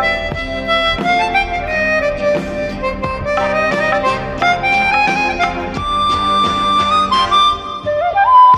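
Harmonica playing a film-song melody live, backed by a small band of tabla, keyboard and guitar. The melody ends on a long held note a little before the end.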